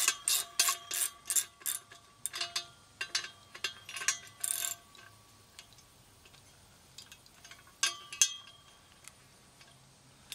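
Socket ratchet wrench clicking in quick, regular strokes, about three a second, as the bolt on a metal band clamp around a steel post is loosened. The clicking stops about halfway through, with a couple more clicks near the end.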